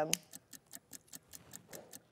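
A brief spoken 'um', then faint, rapid, even ticking, about seven ticks a second.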